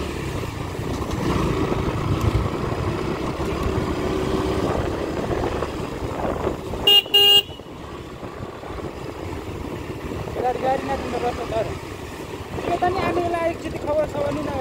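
Motorcycle riding noise, engine and wind rumble, with a vehicle horn giving two short beeps about seven seconds in. Faint voices come in near the end.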